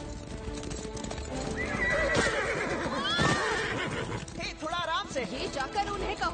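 Galloping horse sound effects for cartoon unicorns: hoofbeats with whinnies starting about one and a half seconds in, under background music.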